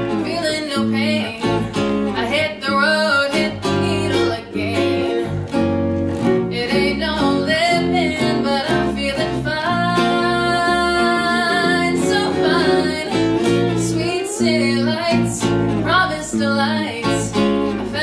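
A small band playing live: a woman singing over a hollow-body electric guitar and an electric bass guitar, with one long held note about ten seconds in.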